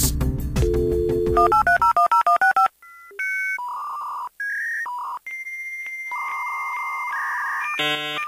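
Background music gives way, about two seconds in, to a quick run of stepping electronic beeps, then a slow sequence of telephone keypad dialing tones, each two-tone beep held from a fraction of a second to about two seconds with short gaps between.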